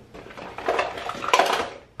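Small makeup containers and tools clattering against one another, a quick run of light knocks and rattles as they are handled, loudest near the end.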